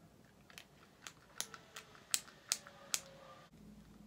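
A quick series of light, sharp clicks and taps, about eight of them, the loudest bunched in the middle. They come from a liquid foundation bottle being handled and its product loaded onto a makeup brush.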